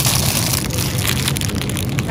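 Thin plastic snack bags crinkling and rustling as a hand rummages through a pile of them and pulls one out, over a steady low hum.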